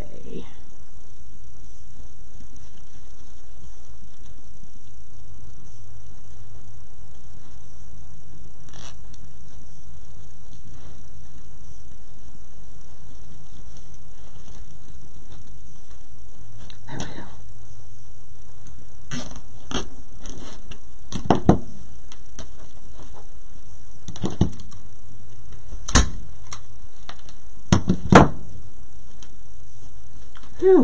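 Handling of stiff poly burlap and mesh petals as they are worked into a wreath frame. In the second half come a few sharp clicks and knocks of hands and tools on the work table, over a steady background hiss.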